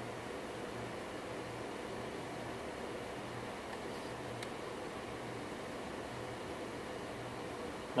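Dell PowerEdge server's cooling fans running steadily while the machine reboots: an even hiss with a faint low hum that comes and goes.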